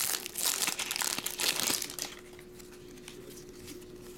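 Foil wrapper of a baseball card jumbo pack crinkling as it is torn open and pulled off the cards, stopping about halfway through; a faint steady hum is left after.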